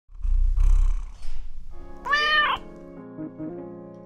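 A cat purring for about a second, then a single meow about two seconds in, over a short musical logo sting whose held chord fades out.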